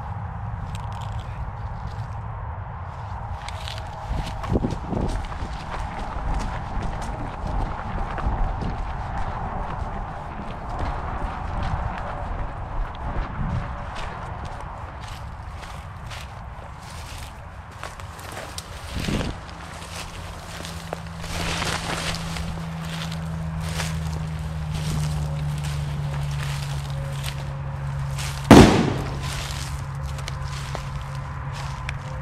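Footsteps rustling through dry grass, brush and fallen leaves. Near the end comes a single loud gunshot, fired at a squirrel.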